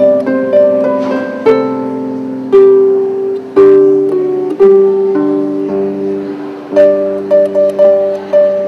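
Solo harp playing a slow melody of plucked notes and chords that ring on and fade, with a quick run of short notes near the end.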